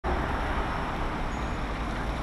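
Steady background noise with a low rumble, starting abruptly and holding an even level.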